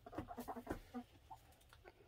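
Hens clucking softly: a few faint, short clucks, mostly in the first second or so.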